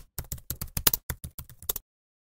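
A keyboard-typing sound effect: a quick, uneven run of key clicks, about eight a second, that stops abruptly shortly before the end.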